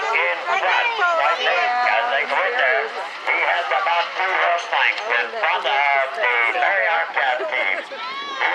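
Continuous speech: a man's voice commentating on a race, talking without a break.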